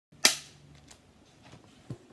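A film clapperboard snapped shut once: a single sharp clack with a brief ring after it, followed by a few faint knocks.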